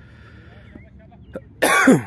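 A person clearing their throat close to the microphone: one short harsh burst about a second and a half in, over quiet open-air background.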